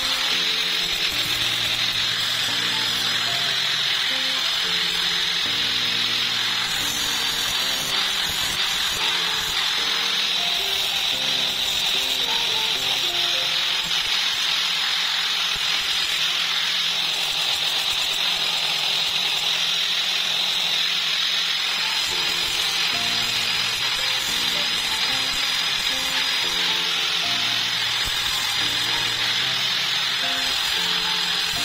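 Angle grinder running steadily with its disc against a block of wood, grinding and shaping it: a constant high whine and hiss. Background music with a melody plays underneath.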